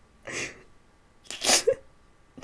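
A woman laughing in breathy bursts: two sharp exhalations about a second apart, the second louder and ending in a short squeak of voice.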